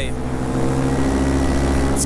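Paramotor engine and propeller running steadily in flight, a constant pitched drone over a low rumble.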